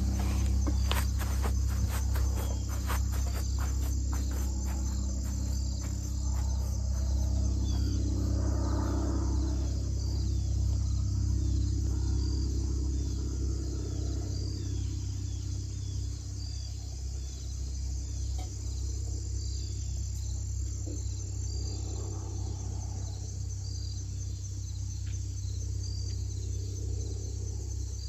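Insects, crickets among them, chirping steadily in a grassy field: a continuous high trill with a short high chirp repeating every second or two, over a steady low rumble. A few short clicks and rustles come in the first few seconds.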